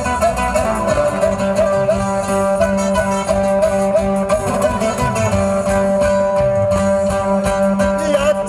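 Andean string band playing a toril instrumentally: strummed guitars with a violin. A short melodic figure repeats several times a second, then gives way to a long held note about two-thirds of the way in.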